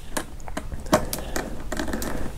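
Precision screwdriver turning a small screw in a plastic solar garden light housing: irregular small clicks and scrapes of the bit and plastic.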